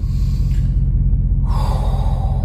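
A man's heavy breath out, a gasp-like sigh, over a steady low rumble in a car cabin.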